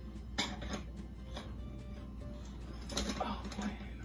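A few light clinks and knocks of small glass pieces being handled and set down, three of them in the first second and a half, over soft background music.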